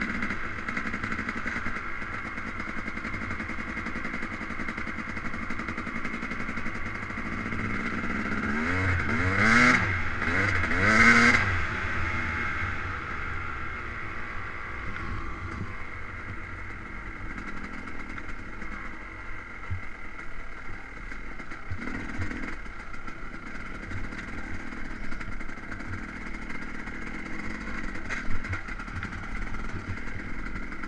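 Yamaha YZ250 two-stroke dirt bike engine running under way. The revs climb and peak twice about a third of the way in, then settle into steadier riding with a couple of short knocks later on.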